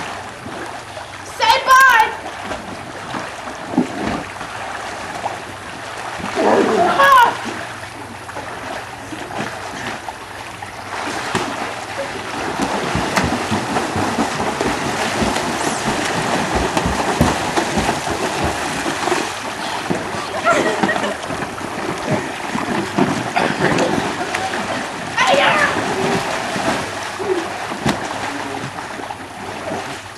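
Water splashing and sloshing as people swim and play in a swimming pool, building up and growing louder through the middle. A few short shouts break in near the start and again near the end.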